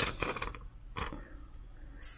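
Clear plastic transfer tape crinkling as it is handled, giving a few short crackles and clicks, most of them in the first second.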